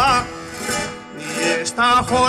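A male jota singer's held note with a wide vibrato breaks off just after the start, leaving a quieter plucked-string accompaniment; his voice comes back in near the end.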